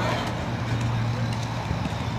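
A truck's diesel engine running steadily at idle, a low even hum.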